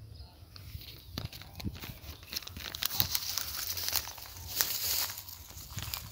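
Crinkling and rustling, a dense run of small irregular crackles that builds about a second in and eases near the end.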